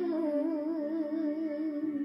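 A woman's solo voice singing a Romanian doină, holding one long note with an even, wavering vibrato that dies away just before the end.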